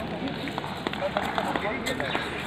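Background talk from people nearby, mixed with several short sharp clicks over steady outdoor noise.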